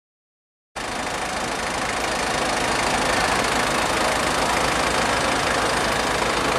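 A fire engine's engine running steadily close by, with an even low throbbing beat under a wide wash of street noise. It starts suddenly about a second in.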